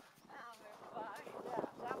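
Faint, indistinct voices talking, with a few light slaps of footsteps in flip-flops on sand.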